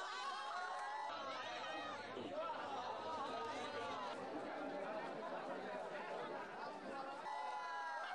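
Crowd chatter: many voices talking over one another at once, with no single speaker standing out.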